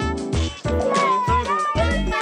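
Upbeat swing-style background music with a bouncing bass beat and brass. About a second in, a pitched line bends up and down in a short wavering glide.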